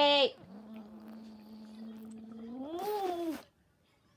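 A toddler's voice while drinking through a bottle straw: a long steady hum, with a short loud cry at the start and a drawn-out whine that rises and falls about three seconds in.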